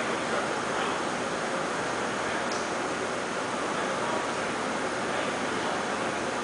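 Steady, even hiss of background noise at a constant level, with no distinct events.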